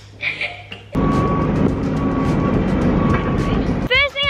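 A truck's engine running loud and steady, starting suddenly about a second in, with a faint high beep that comes and goes three times.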